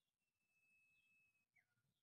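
Near silence, with a faint distant bird call: a high whistle held for about a second, then a short falling whistle.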